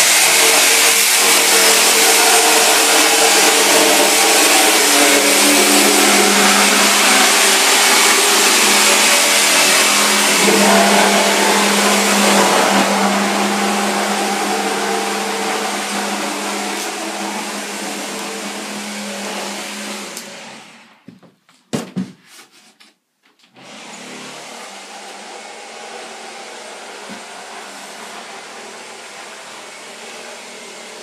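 A corded power tool's electric motor running steadily at high speed, growing fainter from about twelve seconds in and stopping at about twenty-one seconds. A few knocks follow, then a quieter steady whir.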